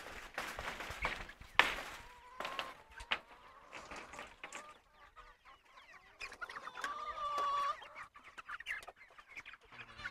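Chickens clucking and calling, with sharp knocks and wing-flapping in the first few seconds as the pen's wire lid is lifted and hens flap onto it. There is one longer, held call about seven seconds in.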